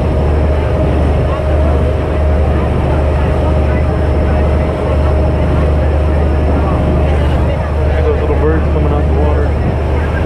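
Motorboat running at speed: a loud, steady low engine drone with the rush of wake water along the hull. A faint steady whine runs under it and stops about seven seconds in.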